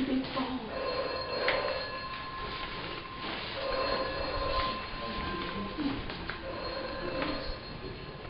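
Telephone bell ringing in a repeated pattern, one ring burst about every three seconds.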